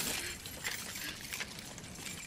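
A large bunch of keys and keychain trinkets jangling and clinking continuously as they are rummaged through.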